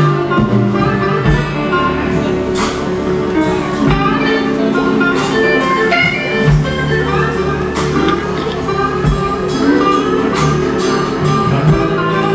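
Blues band playing live: piano-style playing on an electric stage keyboard over a bass line, with drum and cymbal hits keeping the beat.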